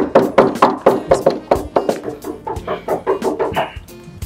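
Rapid, repeated knocking on a door, about five or six knocks a second, over background music.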